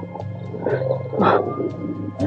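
Wolves snarling and barking in a radio-drama sound effect, with two short outbursts, about two-thirds of a second and a second and a quarter in, over sustained low music.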